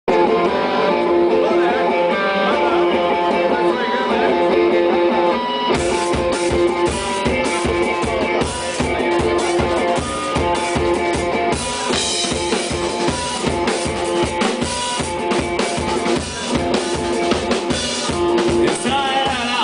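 Rock band playing live: electric guitar alone at first, then the drum kit and full band come in about six seconds in with a steady beat.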